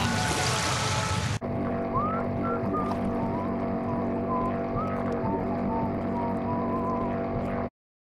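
A hissing rush with whistling glides for about the first second and a half, then a sudden cut to a Sea-Doo personal watercraft engine running steadily, with a thin wavering melody over it. Everything cuts off abruptly just before the end.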